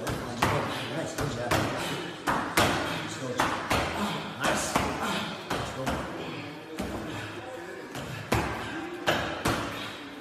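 Boxing gloves punching a Sparbar training pole's ball and swinging arm, a string of sharp thuds and knocks at about one or two a second, with uneven spacing.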